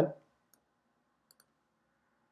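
Two faint computer mouse clicks, about half a second in and again a little over a second in, made while working a video player's seek bar.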